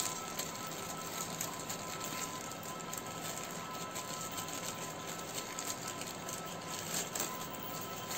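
Faint, irregular crinkling of a plastic packaging bag being handled as a small clip-on microphone is worked out of it, over a steady faint hiss.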